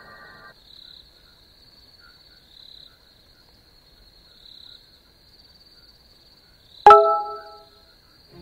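Music cuts off, leaving a faint high whine that swells softly about every two seconds. Near the end a single loud bell-like chime strikes and rings away within a second.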